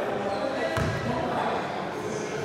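A basketball bouncing once on a sports hall floor, a single deep thump about a second in, over background voices echoing in the hall.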